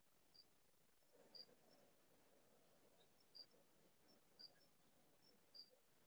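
Near silence: room tone over an open call microphone, with faint, short, high chirps about once a second.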